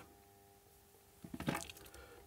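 Mostly quiet, with a faint steady hum, and a short cluster of soft clicks about one and a half seconds in.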